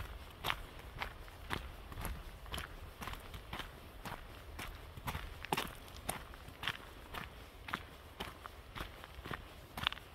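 A hiker's footsteps on a forest trail at a steady walking pace, about two steps a second, over a low steady rumble.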